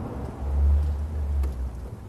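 Outdoor background noise with a low rumble that swells about half a second in and fades away over about a second.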